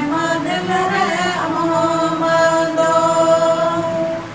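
A small group of women and men singing a Santali song together, unaccompanied. The last phrase ends in one long held note through the second half.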